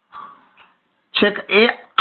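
Speech: a man's voice saying a few words in the second half, after a short pause in which only a faint, brief hazy sound is heard near the start.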